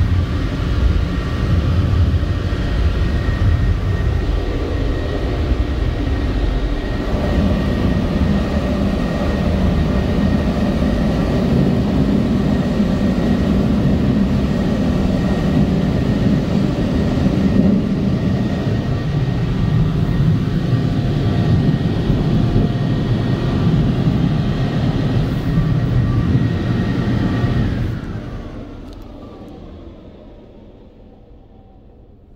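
North Wind car wash dryer's blowers running, a loud steady rush of air with a high whine from the fans, heard from inside the car. Near the end it dies away and the whine falls in pitch as the blowers wind down.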